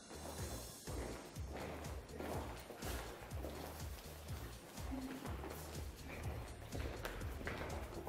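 Music with a steady bass line, over the irregular clicking of several pairs of high heels striking a tiled floor as a group walks.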